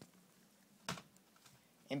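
A single sharp click about a second in, with a fainter one at the start, over quiet room tone; a man's voice starts near the end.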